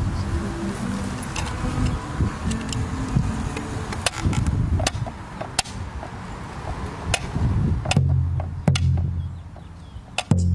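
Percussion opening a Taino song: a carved wooden slit drum struck with two sticks, giving sharp wooden knocks over low pitched tones. Near the end a large hand drum joins with deep booming beats.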